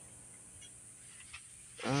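Quiet background hiss with one faint tick a little past halfway, then a man's long, drawn-out "um" starts near the end.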